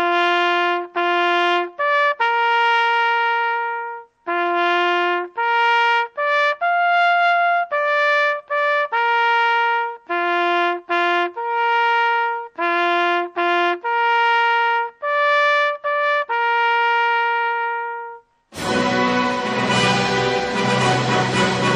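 Solo bugle call on a trumpet, played slowly as a string of separate held notes, sounding the moment of silence that opens the ceremony. Near the end it gives way to band music with a choir.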